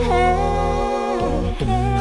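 A woman singing a wordless vocalise, holding long notes and sliding down between them, over a low sustained backing drone that drops out for about half a second partway through.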